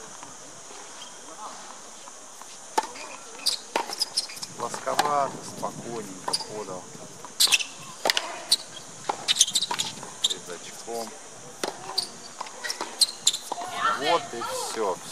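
Tennis balls struck by racquets and bouncing on a hard court: a series of sharp pops at irregular intervals, with voices in the background.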